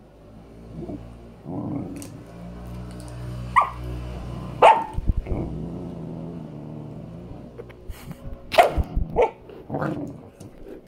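Samoyed puppy growling in play with a low, sustained rumble, breaking into short sharp barks twice in the middle and several more near the end.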